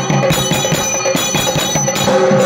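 A metal handbell ringing rapidly and continuously, several strokes a second, with low drum beats underneath.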